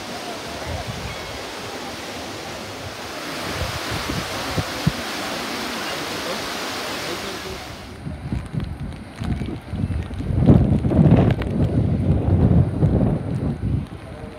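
Water rushing along a wide, shallow garden water channel, a steady hiss that grows louder a few seconds in. After a cut about halfway, this gives way to low, gusty rumbling of wind on the microphone.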